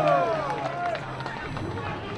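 Unintelligible shouting voices from the street protest, loudest in the first second and then giving way to a steady low street hum.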